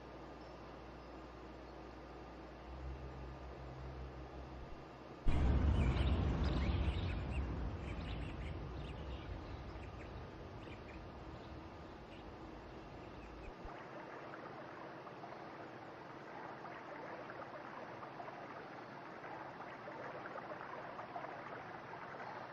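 River water running, coming in suddenly about five seconds in, loud at first and easing to a steady rush. A faint low hum comes before it.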